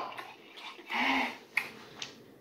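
A short, low hum-like sound about a second in, then a single sharp click shortly after.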